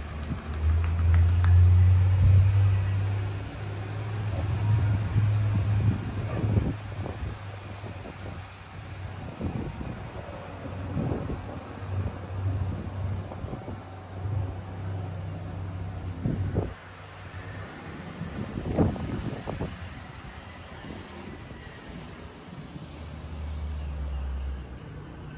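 A low rumble that swells and fades, loudest in the first few seconds, with scattered soft taps and rustles over it.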